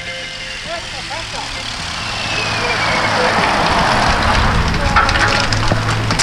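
Wind rushing over the microphone of a camera on a moving road bike, with tyre noise from a riding group; the rush builds about two seconds in, and a few sharp clicks come near the end.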